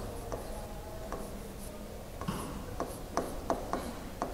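Stylus writing on a digital whiteboard tablet: light scratching strokes, with a quick run of sharp taps in the second half as the letters are put down.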